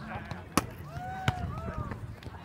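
Two sharp slaps of a volleyball being struck by players' forearms and hands, about three quarters of a second apart, over faint voices.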